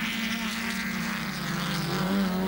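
Touring race car engines running at high revs, a steady droning note that drops a little in pitch past the middle.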